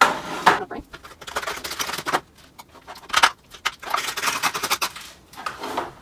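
Kitchen handling noises at the oven as a baking tray is fetched with oven mitts: an irregular run of scrapes, rustles and clatters, the loudest right at the start, about half a second in and about three seconds in.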